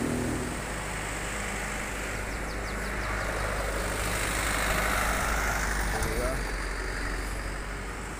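Road traffic: a vehicle passing close by, its sound swelling to a peak about five seconds in and then fading, over a steady low rumble.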